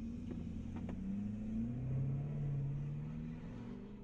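Ford F-250 Super Duty pickup's engine pulling away, heard from inside the cab: its note rises about a second in, levels off, then fades toward the end.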